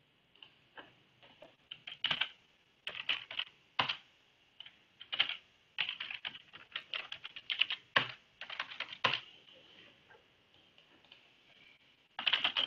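Computer keyboard typing: irregular runs of keystrokes with short pauses between them, the busiest stretches about two, six and nine seconds in. A faint steady high tone sits underneath.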